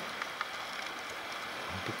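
Steady rush of stream water running and trickling over rocks, with a couple of faint clicks near the start.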